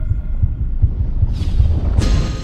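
Loud, deep, irregularly pulsing rumble from the film's sound design, starting abruptly with the cut to black. A rising whoosh climbs over it in the second second, leading into the credits.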